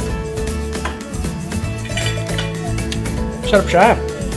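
Background music with steady held notes. Near the end comes a short wavering voice sound, the loudest moment.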